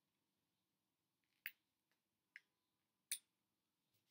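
Near silence broken by three short, sharp clicks, each about a second after the last.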